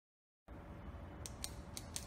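A low steady hum starts suddenly about half a second in. Over it, from just past the middle, comes a run of four sharp, crisp clicks, about a quarter second apart.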